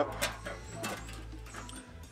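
Soft background music, with a few light clicks as a stainless steel smoker door is handled and swung toward its opening.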